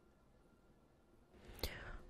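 Near silence, then a soft intake of breath and lip noise from a man about to speak, near the end.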